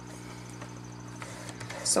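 A steady low hum under the room, with a few faint light taps and rustles as sheets of cardstock are handled and set against the rail of a paper trimmer.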